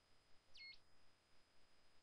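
Near silence: room tone with a faint, steady high-pitched whine and one short, faint electronic-sounding chirp about half a second in.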